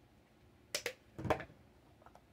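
A plastic bottle being handled and put down: two quick sharp clicks, then a louder, duller knock.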